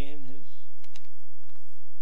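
Paper being handled close to a microphone: a few sharp clicks and rustles, about a second in and again half a second later, after a short bit of a man's voice at the start.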